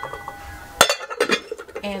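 Glass lid of a Dash mini rice cooker clinking against the rim of its non-stick pot as it is put back on: one sharp clink a little under a second in, then a few lighter clicks.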